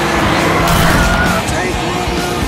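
A sports car's engine running hard at speed, in a loud, dense film-trailer sound mix with voices.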